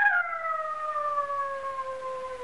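A dog howling: one long drawn-out note that slides slowly down in pitch.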